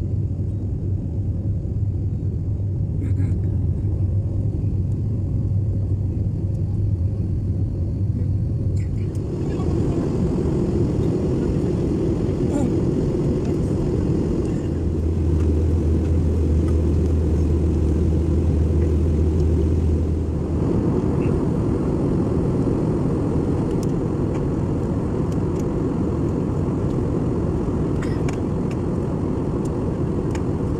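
Airliner cabin noise from a window seat during the climb after takeoff: a steady, loud rumble of jet engines and airflow. Its tone shifts about nine seconds in, a low drone joins for several seconds in the middle, and the sound broadens again about two-thirds of the way through.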